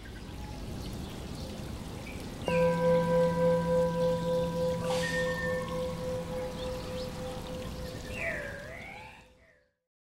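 A bell struck once, about two and a half seconds in, ringing on with a slowly pulsing hum over a faint hiss like rain. A couple of swooping calls come near the end before the sound fades out.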